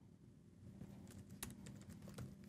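Faint computer keyboard typing: a quick run of light key clicks starting about half a second in, one slightly louder stroke in the middle.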